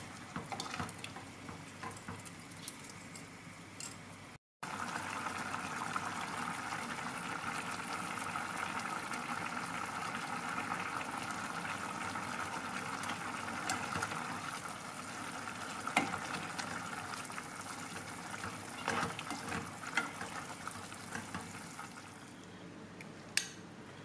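Korean spicy chicken stew boiling in a pot, with a steady bubbling hiss and scattered pops. For the first few seconds, before a brief break, there are light clicks and sloshing as glass noodles are stirred in.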